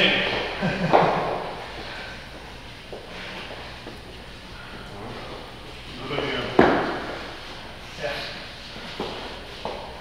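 Indistinct voices in a large, echoing gym hall, with a single sharp knock about six and a half seconds in.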